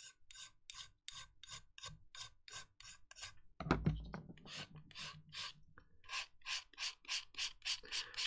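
Hand filing and sanding a grey plastic model kit part: quick back-and-forth scraping strokes, first with a metal needle file and then with a sanding stick, about three strokes a second. There is a soft bump about midway through as the part and tool are handled.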